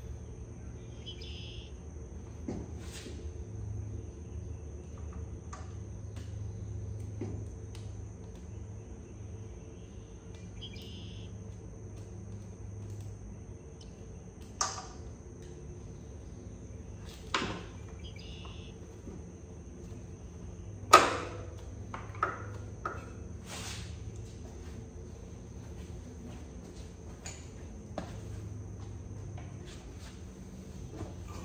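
Hand tools working on a dirt bike's frame and engine parts: a handful of sharp metallic clicks and knocks, the loudest a little past the middle. Under them run a steady low hum and a constant thin high tone.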